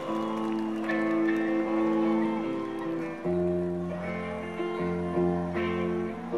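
Live band playing the instrumental opening of a song: held guitar chords, with bass notes coming in about three seconds in.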